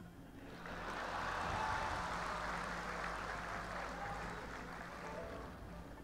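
Large audience applauding, with a few faint voices mixed in; the applause swells about a second in and fades away near the end.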